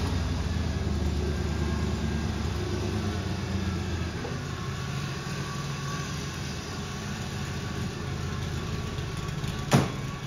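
Factory Five Cobra's 5.0-litre fuel-injected Ford V8 idling steadily through its side pipes. Near the end a car door shuts with a single sharp knock.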